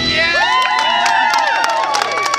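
A small group cheering and whooping, many high voices overlapping in rising-and-falling shouts.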